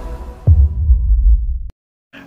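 Logo intro sound effect: a fading music tail, then a deep bass impact about half a second in, dropping quickly in pitch and rumbling on before cutting off suddenly near the end.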